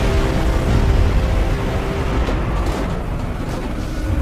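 Dramatic film-trailer score mixed with a loud, deep rumble that hit suddenly just before and eases slightly: the sound design of a tanker breaking apart in a storm at sea.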